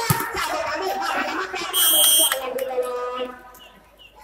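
A volleyball struck hard at the start, then a referee's whistle blown once for about half a second, high and piercing, marking the end of the rally, over crowd and loudspeaker voices.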